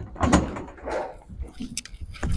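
Bowling alley din: a few short thuds and clatters of balls and pins.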